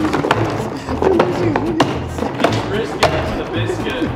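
Background music, with a series of sharp, irregular knocks from a trash can being rocked and shuffled about on the ground with a person inside.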